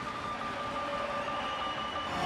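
Steady rushing noise with a faint, thin high tone held throughout: the sound-effect bed of a TV title graphic.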